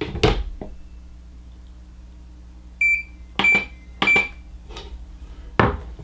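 Digital scale beeping three times, short high beeps each with a button click, about three to four seconds in, between knocks of the paintball gun being handled on it near the start and near the end. The scale is being reset after acting up during the weighing.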